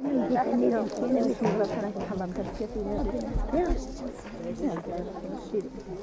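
Several women's voices talking over one another in greeting, a lively overlapping chatter, with a brief low rumble near the middle.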